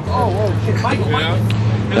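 Voices of people talking close by over a steady low engine hum.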